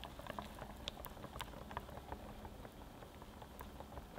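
Wire balloon whisk beating thick cream-cheese batter in a glass bowl: faint, quick wet clicks and squelches, busiest in the first two seconds and sparser after.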